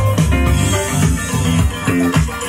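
Disco music playing back from a vinyl LP on a Pioneer PLC-590 turntable, through a valve preamp and FET power amp, heard over loudspeakers in the room. The music has a heavy bass line and a steady beat.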